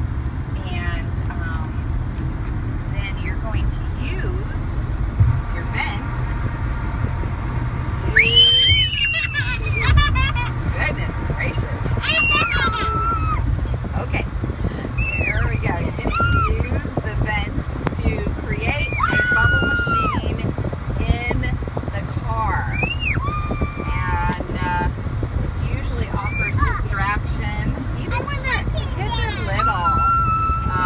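Steady road and engine noise inside a moving car's cabin, with children's high-pitched squeals and shrieks breaking in again and again, most of all from about eight seconds in.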